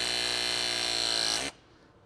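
Battery-powered RLS press tool's motor running through a crimp cycle on a copper press-to-connect fitting: a steady whine that dips slightly in pitch and cuts off about one and a half seconds in, as the jaws complete the crimp.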